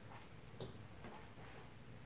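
Near-silent room with a few faint clicks, the clearest about half a second in.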